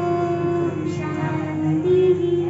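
A woman singing a Hindi devotional hymn to Saraswati into a microphone, holding long sustained notes that step gently from one pitch to the next.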